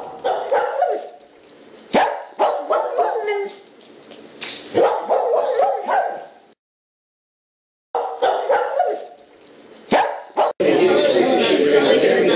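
Dog-like barking and yapping in several short bouts, broken by a moment of dead silence. Near the end a loud, dense, continuous sound cuts in.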